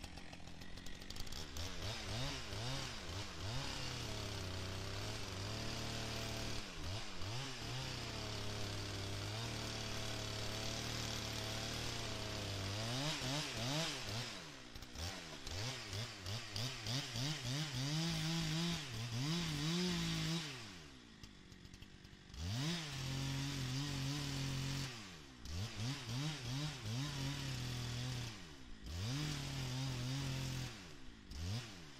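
Gasoline chainsaw running at high revs while cutting into the trunk of a rotten black oak. It holds steady for several seconds, then revs up and down. About two-thirds of the way through it drops away for a couple of seconds, then comes back with a run of short revs near the end.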